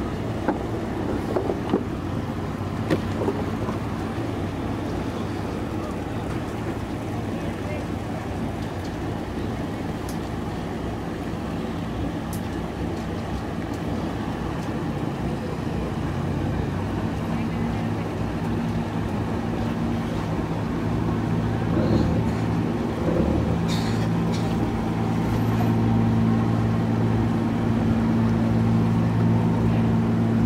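A passenger boat's engine running with a steady low hum as the boat moves through the harbour. The hum grows louder over the second half.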